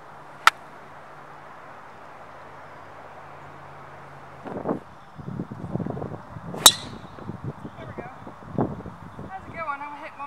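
Two golf shots: a sharp, short click of an iron striking the ball about half a second in, then a louder, ringing impact of a driver off the tee about two-thirds of the way through. Rough, gusty rustling noise fills the gap between them.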